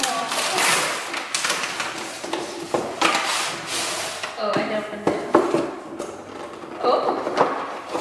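Tissue paper rustling as a gift box is pulled out and opened, with a few soft knocks of the box being handled on the counter.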